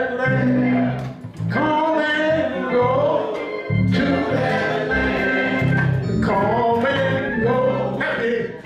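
Men singing a gospel song into microphones, accompanied by an electric keyboard holding steady low notes.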